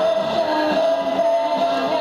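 Live stage music from a singer and band, with one long held note over shorter moving notes beneath it.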